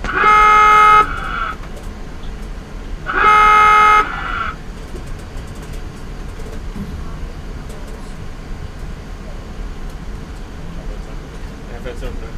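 A Virginia-class submarine's diving alarm sounding two loud, steady blasts, each about a second long and about three seconds apart, with a short ringing tail, signalling that the boat is diving. A steady low hum continues underneath.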